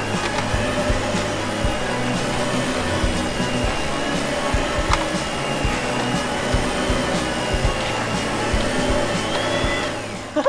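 Toy vacuum cleaner whirring steadily with a high whine and a few sharp clicks, over background music. The whirring stops abruptly at the end.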